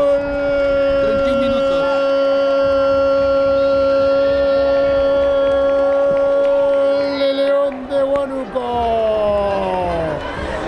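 A football commentator's long drawn-out goal cry: one loud note held steady for nearly eight seconds, then breaking into a few falling slides near the end.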